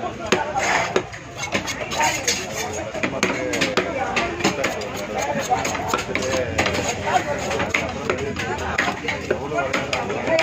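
Heavy fish-cutting knife chopping a pomfret on a wooden block: repeated sharp knocks as the blade cuts through the fins and strikes the wood, under a constant background of voices.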